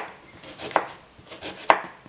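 Kitchen knife slicing an onion into thin strips on a wooden cutting board: a few light knocks of the blade on the board, two clearer ones about a second apart.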